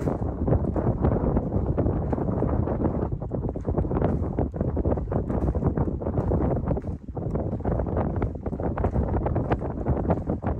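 Footsteps on wooden boardwalk planks, a steady run of knocks, with wind noise on the microphone throughout.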